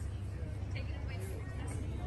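Outdoor parking-lot ambience: a steady low rumble with faint, indistinct voices of people nearby.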